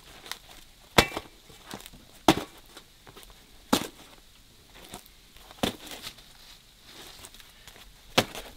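Crisp-crusted flatbreads being handled and set down on a stack and a metal tray: four sharp knocks a second or two apart in the first six seconds, with softer taps and rustles between.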